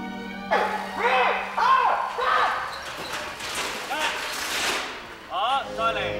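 Short wordless shouts and yells, several in a row, each rising and falling in pitch, with a noisy rushing burst in the middle. A held low music note fades out in the first half.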